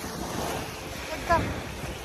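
Steady rushing noise of wind, with a short vocal sound a little past the middle.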